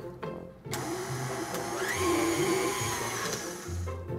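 KitchenAid stand mixer running, its wire whisk beating a thick corn spoon bread batter with fresh corn kernels just added; the motor whine rises in pitch about two seconds in and then holds steady. Background music plays underneath.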